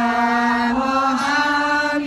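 Buddhist chanting: a long, drawn-out sung syllable held on one note, stepping up in pitch twice partway through.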